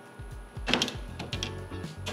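Background music, with a few sharp metallic clicks about two-thirds of a second in and again past the middle as a wire cooling rack and a raw ribeye are handled over a metal sheet pan.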